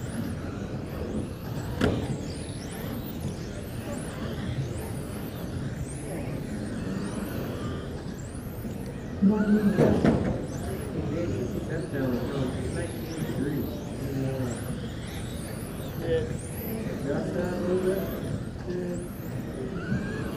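Electric RC touring cars racing on an indoor carpet track: many high-pitched motor whines rising and falling as the cars accelerate and brake, over a steady hall rumble and voices in the background. A louder burst comes about nine seconds in and lasts about a second.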